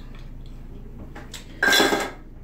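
Small hard objects clattering and clinking as they are handled and put away, with a few light clicks and then a short, loud clatter near the end.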